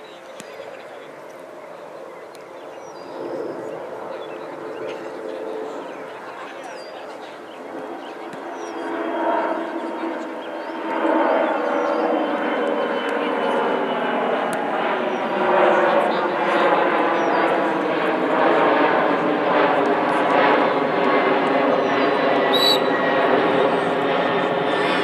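Airplane flying over, its engine drone building steadily louder from about a third of the way in and staying loud, with its pitch easing slightly downward.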